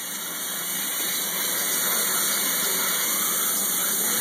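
Water spraying steadily from a handheld bath sprayer onto a wet dog's coat.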